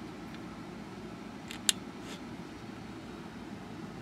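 Steady low hum of bench electronics, with one sharp click a little under two seconds in.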